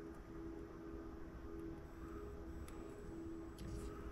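Quiet workbench with small clicks from cables and connectors being handled, and a faint low hum that pulses on and off about once a second.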